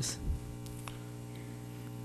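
Steady electrical mains hum in the microphone and sound system: a low buzz with a stack of even, unchanging overtones.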